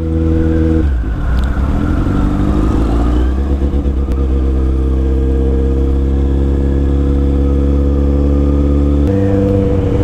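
Kawasaki Z800 inline-four motorcycle engine running while riding. The engine note drops about a second in, climbs over the next couple of seconds, then holds steady, and changes again near the end.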